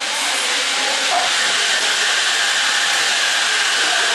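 Espresso machine steam wand hissing steadily and loudly, as when frothing milk.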